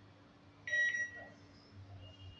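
A Hitachi ATM sounding one short electronic beep, a steady high tone lasting about half a second, a little under a second in. It is the machine's confirmation of a press on one of the function keys beside the screen.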